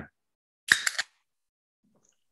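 Can of Dogfish Head SeaQuench Ale being cracked open: a sharp snap of the pull tab and a brief hiss of escaping carbonation, lasting about a third of a second, starting about two-thirds of a second in.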